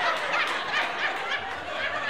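Audience laughing: many overlapping laughs from a crowd.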